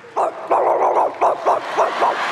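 A dog barking in a quick run of short yaps, about five a second.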